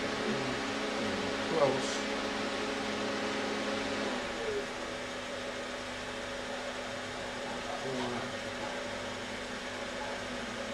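Steady hum and hiss of the pulse width modulator's two small cooling fans running; a lower part of the hum drops out about four seconds in.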